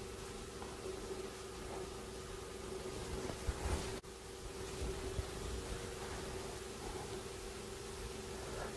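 Quiet room tone: a steady hiss with a faint low hum, a few soft handling bumps in the middle, and a brief break in the sound about halfway through.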